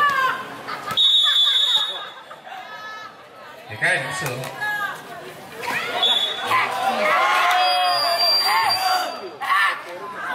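Players and spectators shouting through a volleyball rally, with a short referee's whistle about a second in and another near the end, and a few sharp hits of the ball.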